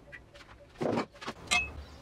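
Small steel parts being handled and fitted at a bench vise: a few light clicks, a short scrape a little before the middle, and a sharp metallic clink with a brief ring later on.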